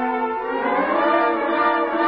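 Orchestral music led by brass: a held chord that moves upward into a new chord about half a second in. It is a musical bridge marking a scene change in a radio drama.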